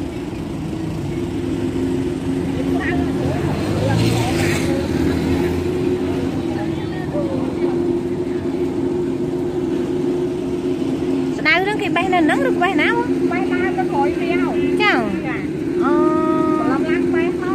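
A steady mechanical hum holding two even low tones throughout, with people's voices talking briefly in the second half.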